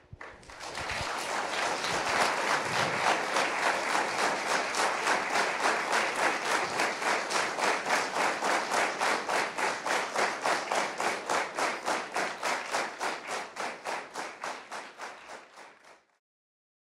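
Audience applause that starts as loose clapping and within a few seconds settles into rhythmic clapping in unison, about three claps a second, growing softer near the end.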